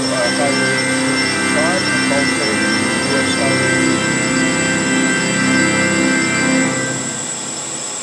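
Music playing inside a car cabin: long held chords with a voice over them, dropping away briefly near the end before picking up again.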